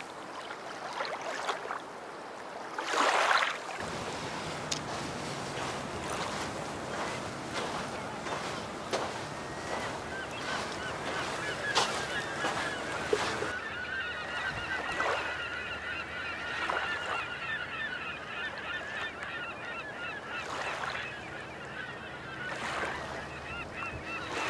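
A flock of birds calling, many short honk-like calls repeating and overlapping through the middle and later part, over a steady outdoor hiss, with a brief rush of noise about three seconds in.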